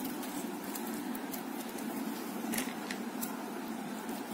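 Steady low hiss of room noise, with a couple of faint light ticks from plastic basket-making wires being handled.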